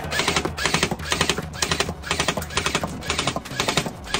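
G&G MXC9 electric airsoft gun firing three-round bursts in quick succession, about two bursts a second, each burst a rapid rattle of shots.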